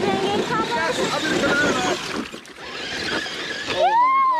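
Shallow creek water rushing and splashing around a Traxxas TRX4 Sport RC crawler stuck in the stream, with excited voices over it. A long rising-then-falling exclamation starts near the end.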